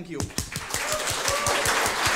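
A roomful of people applauding: the clapping starts right after a spoken thank-you and swells within about a second into steady applause.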